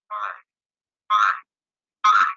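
Three short, choppy bursts of garbled voice audio about a second apart, each cut off into dead silence: the embedded video's sound breaking up over the webinar connection.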